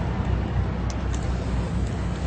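Steady rumble of city street traffic, with a few light clicks about a second in and near the end.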